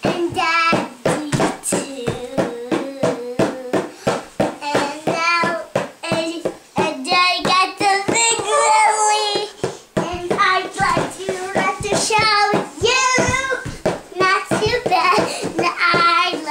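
A young girl singing a made-up song, her voice wavering up and down in pitch through short, loud phrases.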